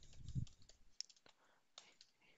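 Computer keyboard typing heard faintly: a few separate sharp key clicks spread over the two seconds as a word is typed. A faint low murmur comes in the first second.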